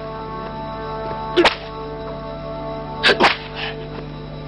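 Sharp cracks like lashes of a whip, one about a second and a half in and a quick pair about three seconds in, over background music holding steady chords.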